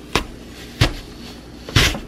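Apple slicer-corer pressed down through a crisp Granny Smith apple: three sharp crunching knocks as the blades cut through, the loudest and longest near the end as the apple gives way into wedges.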